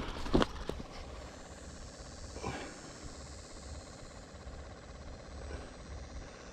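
Steady low rumble of wind on a body-worn camera's microphone, with a few sharp knocks in the first second and a brief scuff about halfway through.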